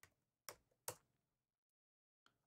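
Computer keyboard keystrokes: three short, sharp key clicks within the first second.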